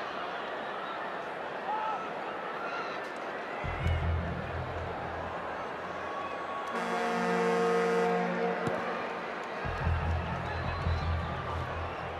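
Stadium crowd noise, then the halftime hooter sounding one long, loud horn note for a couple of seconds a little past the middle, as the first-half clock runs out. A low rumble comes and goes before and after it.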